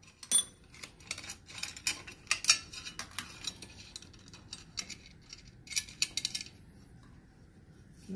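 Metal clinks and clatter of a wrench, clamp hardware and a steel speed square being unclamped and lifted off a milling machine's rotary table, with the spindle stopped. The sharp irregular clinks stop about six and a half seconds in.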